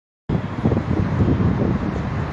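Indistinct murmur of many voices and movement from a crowd gathered in a large, echoing hall, starting abruptly a quarter second in.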